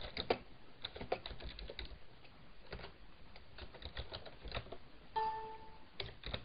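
Computer keyboard typing: faint, scattered keystrokes. A short electronic beep sounds about five seconds in.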